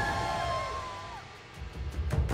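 Background music: a held melodic note slides down and fades about a second in, then a new passage with regular, bass-heavy drum beats starts near the end.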